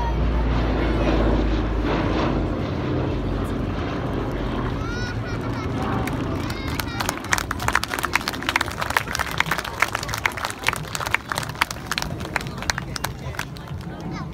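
Boeing B-17G Flying Fortress's four Wright Cyclone radial engines droning low as the bomber passes overhead, fading after about six seconds as it climbs away. A dense run of sharp claps follows for most of the rest.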